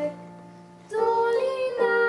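A girl singing a Slovak folk song solo into a microphone. She breaks off a held note at the start, pauses briefly, then comes back in about a second later with long, sustained notes.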